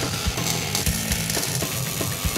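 MIG welder arc crackling and hissing steadily while tack-welding a steel motor-mount bracket, over background music with a steady beat.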